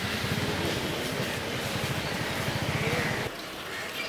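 A motor vehicle engine running close by, a low rumble with a fast, even pulsing, which stops abruptly a little over three seconds in.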